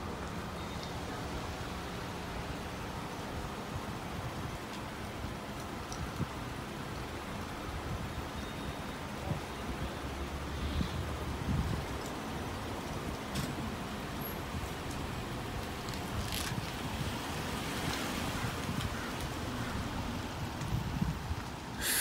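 A police SUV's engine running as it pulls away and drives off across a parking lot, over steady outdoor background noise.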